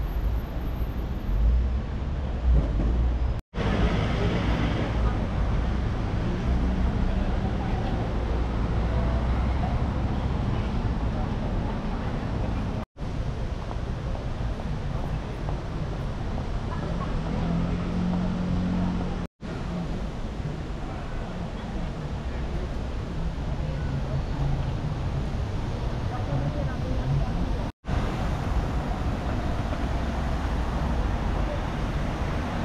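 Busy city street ambience: steady traffic noise from passing cars and buses, voices of passers-by, and a fountain splashing. The sound cuts out for a split second four times.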